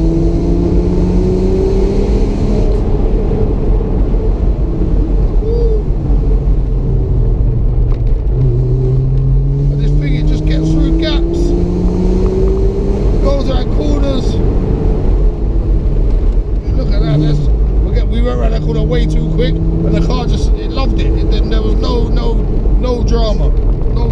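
Porsche 986 Boxster S's 3.2-litre flat-six engine pulling hard under acceleration on the open road. Its pitch climbs steadily and drops back three times as the manual gearbox is worked, over a steady rush of wind and road noise in the open-top cabin.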